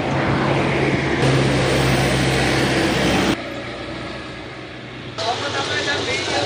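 Street traffic: a motor vehicle's engine running close by with road noise and a steady low hum, cutting off abruptly about three seconds in. Quieter street background follows, with voices near the end.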